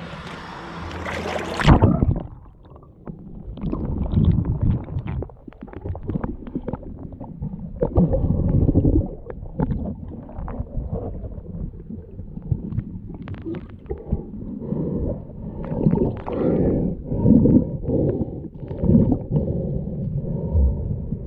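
A splash as the camera plunges under the creek's surface, then muffled underwater sound: water sloshing and gurgling around the camera housing, with knocks and bumps as it moves among the rocks.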